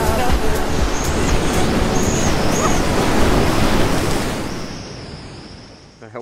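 Loud, steady rush of a big whitewater rapid heard from the kayak on a helmet camera, fading out over the last two seconds.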